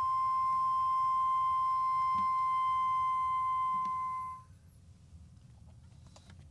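A flute holding one long, steady, nearly pure high note, which ends about four and a half seconds in. A few faint soft clicks follow.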